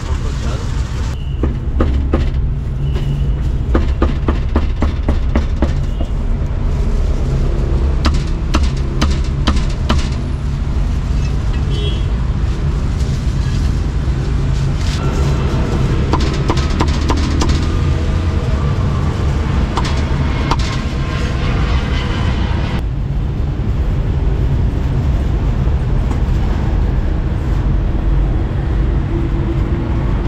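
Heavy cleaver chopping roast pork on a round wooden chopping block, in quick runs of strokes, one through the first third and another in the middle. A steady low street-traffic rumble and voices run underneath.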